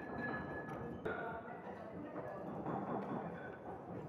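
Pestle grinding and scraping dry powder in a porcelain mortar, a continuous gritty rubbing with a high ringing note from the bowl that comes and goes. The powder is being triturated to mix it evenly.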